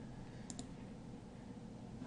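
Two quick computer mouse clicks about half a second in, faint over low room hiss.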